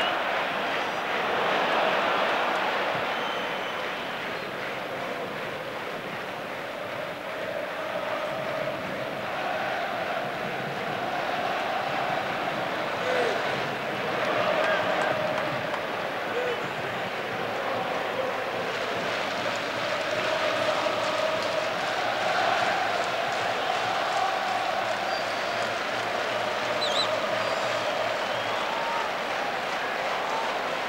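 Large stadium crowd of football supporters chanting and singing, a continuous mass of voices that swells and fades every few seconds.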